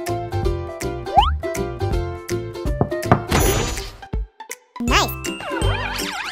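Children's background music with a steady beat. About three seconds in comes a shimmering swish, then a brief break and a new cue with warbling, sliding tones.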